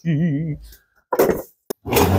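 A man humming a short wavering tune, then a brief breathy rush and a single sharp click near the end.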